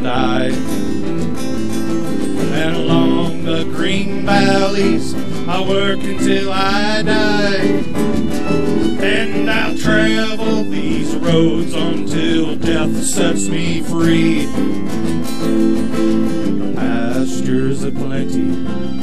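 Live acoustic string band playing a country/bluegrass-style tune: fiddle over strummed and picked acoustic guitars.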